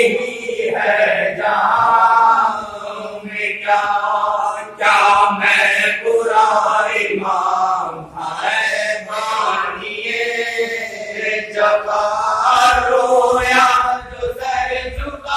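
Male voice chanting a marsiya, the Urdu elegy for the martyrs of Karbala, in long melodic phrases separated by short breaths.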